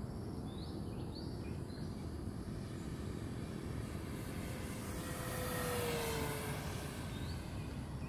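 Electric RC model warbird's motor and propeller passing by: a whine that swells about four seconds in, peaks and drops in pitch as it goes past. A few short bird chirps come early and once near the end, over low wind noise.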